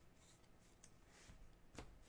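Near silence, with faint handling noises of trading cards being sorted by gloved hands and one small click near the end.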